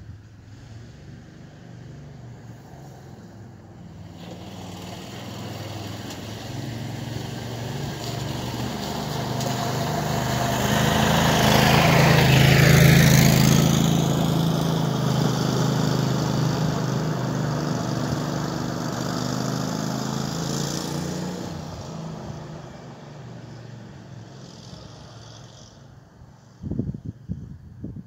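Landmaster LM650 utility vehicle's 653 cc engine driving past on gravel: it grows louder to a peak about halfway through, then fades as it moves away.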